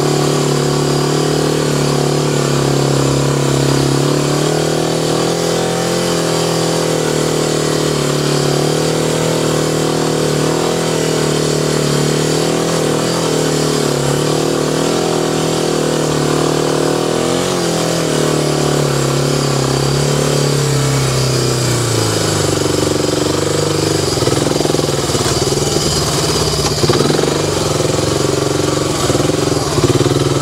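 ATV engine running at a steady, moderate speed, easing off about two-thirds of the way in and settling to a lower, slower note.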